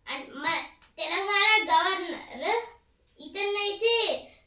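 A child's voice speaking in a high, lilting, sing-song way, in three phrases with short breaks between them.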